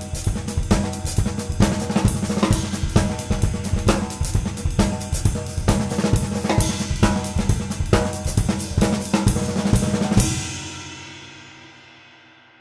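Mapex drum kit played in a busy groove of bass drum, snare, hi-hat and cymbals. About ten seconds in the playing stops on a final hit that rings out and fades away.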